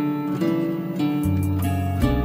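Slow instrumental music led by a guitar playing a melody of plucked notes, with a low bass note coming in just past halfway.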